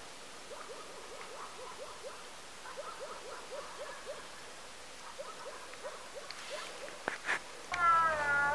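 An animal calling: a long series of short, low, arched notes repeated several times a second. Near the end come a couple of knocks.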